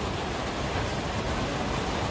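Steady, even hiss-like background noise with no distinct event: the ambient noise of the place during a pause in the talk.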